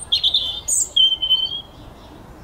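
A bird calling loudly: a quick run of harsh, high squawks, then one held high whistled note about a second in.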